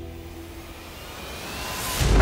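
A rising whoosh: a rushing noise that swells steadily louder toward the end, as the music fades out.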